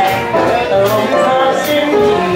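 Live band playing an instrumental passage of a swing tune, with held melody notes over a regular cymbal beat.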